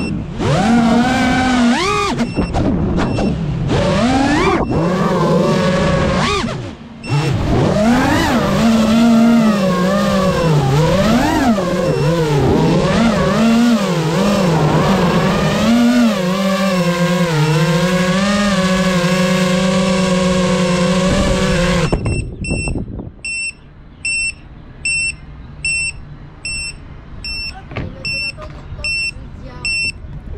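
FPV racing quadcopter's brushless motors whining, the pitch rising and falling with throttle and briefly dropping away about seven seconds in. The motor sound cuts off suddenly about 22 seconds in. After that the drone's electronic beeper sounds repeatedly, a little more than once a second.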